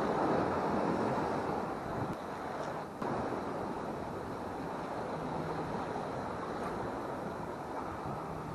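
Ocean surf washing over rocks, with wind buffeting the microphone; the sound shifts abruptly about three seconds in.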